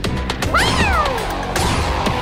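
Cartoon background music, with a cat character's meow-like cry that rises and then falls in pitch about half a second in.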